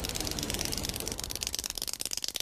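A rapid, steady rattling sound effect, about twenty clicks a second, easing off slightly near the end.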